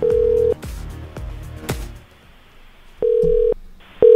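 Ringback tone of an outgoing phone call not yet answered: steady half-second beeps, one at the start and a pair about three seconds in. Music with a beat plays under the first two seconds, then stops.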